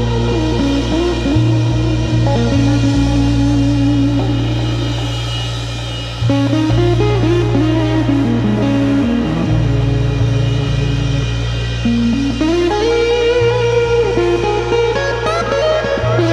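Blues-rock band playing an instrumental passage: an electric guitar, a Fender Stratocaster, plays a lead line with bent notes over bass guitar and drums.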